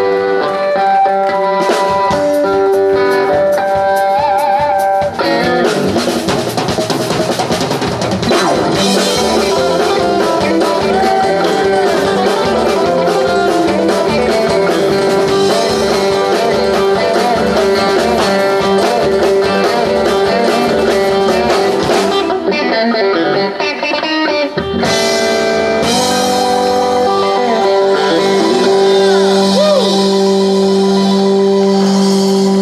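Live country-folk band playing: electric guitar lead over drum kit, bass guitar and acoustic guitar. Held chords open the passage, the drums come in with a steady beat about five seconds in, and there is a short drop in the drums and cymbals about three-quarters of the way through.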